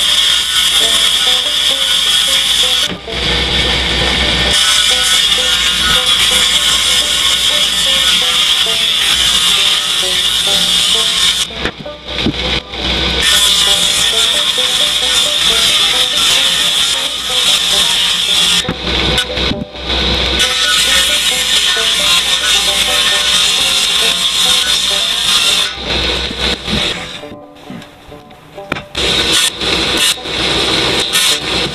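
Table saw running and ripping plywood, loud and steady, with a high whine. The sound drops out briefly a few times: about 3 seconds in, around 12 and 20 seconds, and for a couple of seconds near the end.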